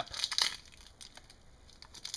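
Soft crinkling and rustling handling noise with a few small clicks, busiest in the first half second and then faint, as the sculptor reaches for the yellow modelling clay.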